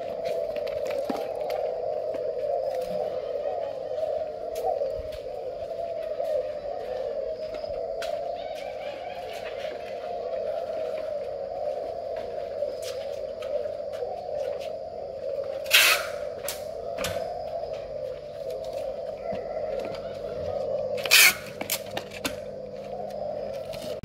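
Many caged doves cooing together, making a steady, wavering chorus. Two brief, loud noises cut through it about 16 and 21 seconds in.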